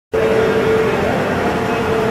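Rousselle 15-ton punch press running idle, its motor and flywheel making a steady hum with one steady tone.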